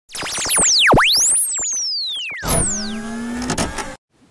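Electronic intro sting: synthesized tones sweeping rapidly up and down in pitch, then a held synth chord from about two and a half seconds in that cuts off suddenly just before the end.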